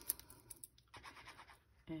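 Faint scratching and rustling of cardstock as the tip of a liquid glue pen is drawn along its edge, with a few light ticks.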